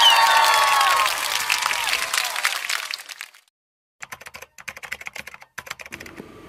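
Edited-in sound effects: a burst of crackling, applause-like noise with a few falling whistle-like tones, fading out over about three seconds. After a brief silence comes a quick run of keyboard-typing clicks.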